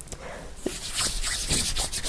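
Palms rubbing together to spread a few drops of face serum: a soft swishing of skin on skin that grows louder about a second in, with a couple of faint sticky ticks.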